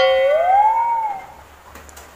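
A man's high falsetto whoop, about a second long: it holds a note, swoops up and then drops away.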